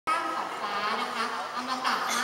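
A woman's voice through a microphone and PA system, speaking in long, drawn-out tones, with a slight buzz to the amplified sound.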